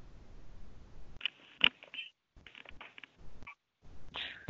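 Faint noise on an open teleconference line: a low hum at first, then scattered small rustles and clicks, one sharper click about one and a half seconds in.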